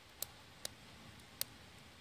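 Quiet background with three faint, short clicks, spread unevenly across the pause.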